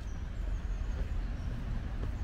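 Low, uneven rumble of outdoor city background noise, with a few faint, short high chirps in the first half.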